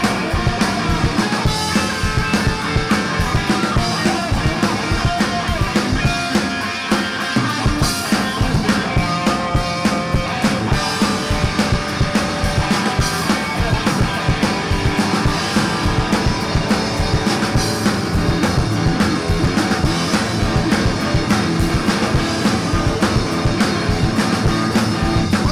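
Live garage punk rock from a trio of distorted electric guitar, bass guitar and drum kit, with a steady driving drum beat throughout.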